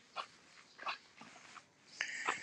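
Two faint, short animal calls, a little under a second apart.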